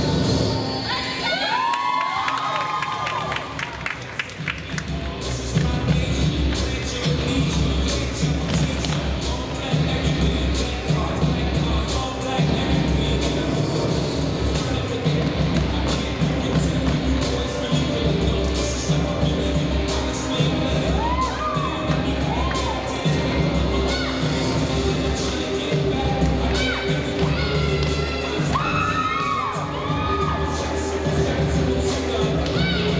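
Hip hop dance music with a steady beat, dropping out briefly a couple of seconds in and then coming back, while the audience cheers and shouts. The shouting is loudest about two seconds in and again near the end.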